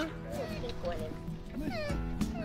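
Newborn orphaned moose calf calling, a few high, thin bleats that fall steeply in pitch, the longest near the end, over a soft background music bed. The calf is calling for its dead mother.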